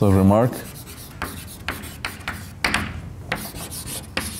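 Chalk scraping on a blackboard in a run of short, irregular strokes, as writing is done.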